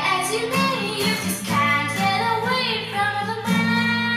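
A child singing a song with acoustic guitar accompaniment.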